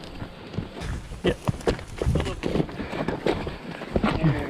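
Heifers stepping and shuffling on a farm track as they are sorted, with irregular hoof knocks and scuffs, and a brief shout from one of the people herding them.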